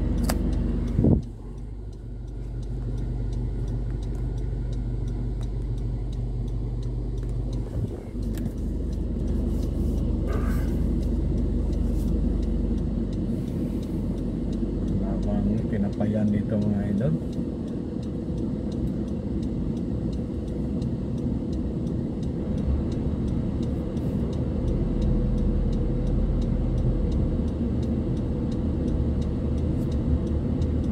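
Car cabin noise while driving slowly: a steady low engine and road rumble. A sharp knock sounds about a second in, and a brief voice is heard about halfway through.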